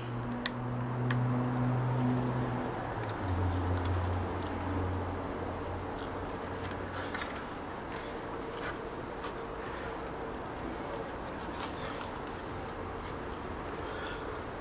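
Small clicks and taps from capacitors and a power-supply circuit board being handled and turned over. Under them, a low steady hum for the first few seconds drops to a lower pitch and fades out about halfway through.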